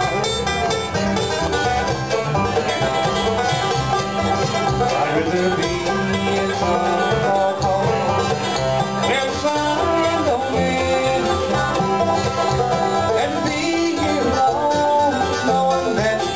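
Live acoustic bluegrass band playing an instrumental passage without singing: banjo, mandolin, acoustic guitar and upright bass together, with the banjo prominent.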